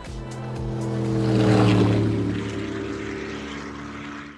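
High-performance powerboat's engines running at speed and passing by. The sound swells to its loudest about one and a half seconds in, drops slightly in pitch as it goes away, then fades.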